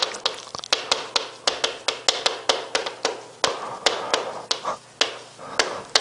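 Chalk writing on a chalkboard: a quick, irregular run of sharp taps and short scratches as a line of characters is written.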